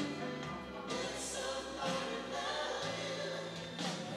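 A woman singing a slow ballad into a microphone, holding long notes, over an instrumental backing.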